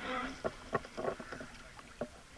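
Water splashing against a rowed river boat as an oar strokes, with a few sharp knocks in the first second or so.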